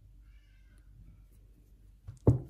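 Near silence: room tone, with a faint, brief high-pitched wavering call about a quarter of a second in.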